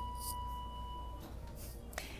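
A steady, high electronic tone over a low hum, lasting about a second and stopping abruptly, with a short click near the end.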